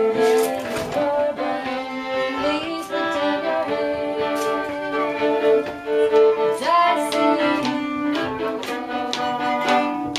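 Three fiddles bowing a tune together in rehearsal, the notes changing every half second or so, with one slide up into a note about two-thirds of the way in.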